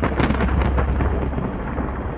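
A sudden loud crash followed by a steady low rumbling noise.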